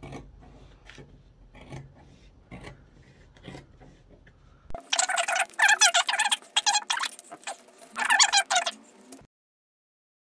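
Scissors cutting through wool felt: faint snips and scrapes at first, then from about halfway a much louder run of rapid cutting strokes, which stops suddenly shortly before the end.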